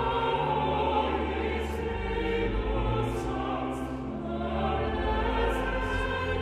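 A small mixed choir of men's and women's voices singing a sacred choral piece, over sustained low notes.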